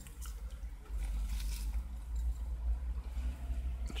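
Soft rustling of thin plywood kit sheets and a plastic tarp being handled, once shortly after the start and again about a second and a half in, over a steady low rumble.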